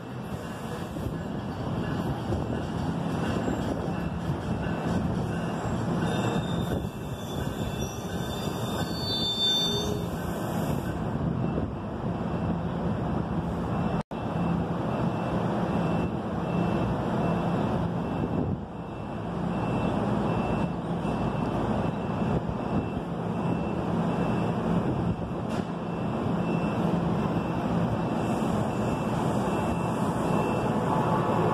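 NJ Transit push-pull train of bilevel coaches rolling into the station and slowing almost to a stop, with a steady rumble of wheels on the rails.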